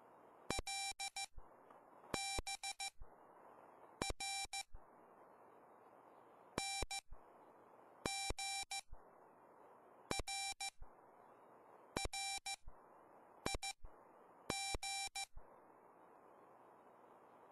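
Morse code sidetone from a RockMite 40 QRP transceiver, a single-pitch beep keyed by hand in nine short groups of dots and dashes, about one group every two seconds. Between the groups is the receiver's steady hiss, which cuts out while each group is sent.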